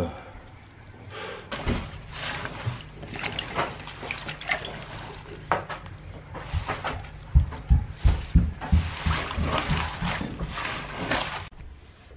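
Water splashing and trickling in a stainless steel sink as handfuls of puha (sow thistle) are washed and drained to rinse out sand and dirt, with irregular rustling splashes and a run of dull knocks from the greens and hands against the sink about two thirds of the way in.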